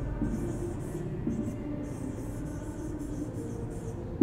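Pen writing a word in cursive on an interactive whiteboard, a run of short scratchy strokes over a faint steady hum.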